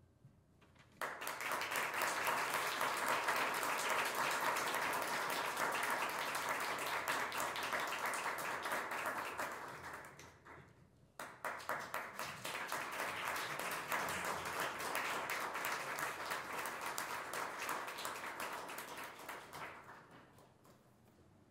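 Small audience applauding in two rounds. The first starts about a second in and dies away after about ten seconds; a second round starts a moment later and fades out near the end.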